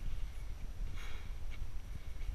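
Wind buffeting the microphone as a steady low rumble, with faint footsteps on a rocky trail and a soft hiss about a second in.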